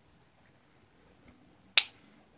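Near silence, then a single sharp, short click near the end.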